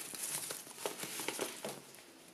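Faint rustling with a few small ticks as a ribbon is untied and pulled off a folded bundle of sweatshirt fabric; the sound drops out just before the end.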